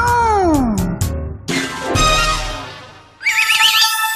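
Cartoon transition sound effects over music: a sliding tone falls away in the first second, followed by a few sharp clicks and a whoosh. From about three seconds in comes a warbling, sparkling magic chime.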